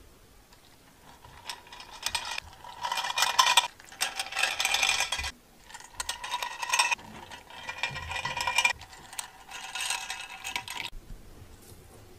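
Fingers rubbing and scratching over the ridged, heart-shaped cavities of a metal baking pan: a dry rasping scrape in five or so spells of a second or two, with short pauses between.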